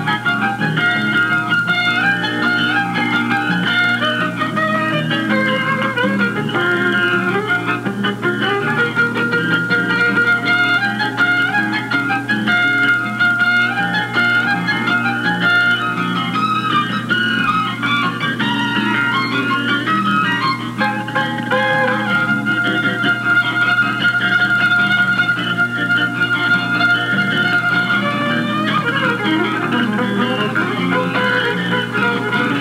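Fiddle band playing a tune: fiddle with guitar and bass guitar. A steady low hum runs under the music, which sounds as if it were re-recorded from a television onto Super-8 sound film.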